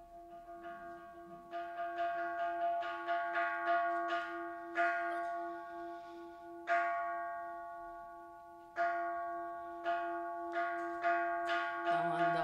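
Kansho temple bell struck over and over: a quick run of strikes, then single strikes about two seconds apart that speed up again near the end. Each strike rings on over a steady low hum.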